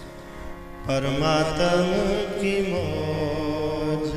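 Sikh kirtan: harmoniums holding sustained reedy chords, joined about a second in by male singing that makes the music louder.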